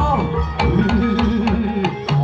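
Live ebeg gamelan music: repeated hand-drum (kendang) strokes under gamelan tones and a held, gliding melody line, loud and steady.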